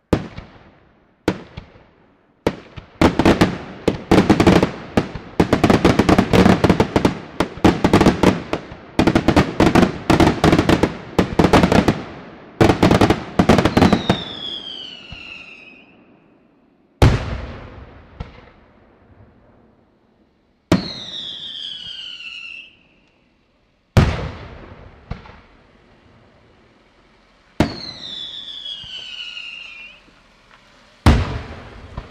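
Daytime fireworks display: a rapid barrage of loud bangs for about the first fourteen seconds, then single heavy shell reports a few seconds apart. Three times a whistle falls in pitch over about two seconds.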